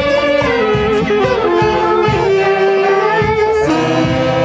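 Live Andean dance band music: a saxophone-led melody held in long notes over a drum kit's steady beat of about two strikes a second.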